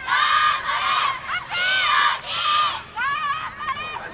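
High-pitched girls' voices shouting and yelling, several at once, in two loud spells: one right at the start and one about one and a half seconds in, with shorter calls near the end.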